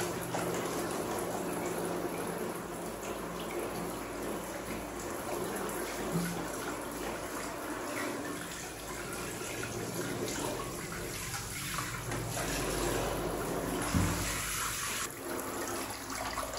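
Handheld shower head spraying a steady stream of warm water onto a baby monkey and splashing into a plastic bathtub. There is a brief low thump near the end.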